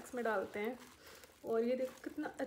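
A woman's voice in two short spoken phrases, with a pause between them.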